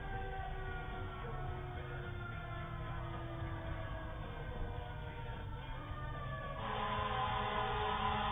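Fire truck siren wailing in slow gliding tones, heard from inside a moving car over a low road rumble. The siren grows louder and fuller near the end.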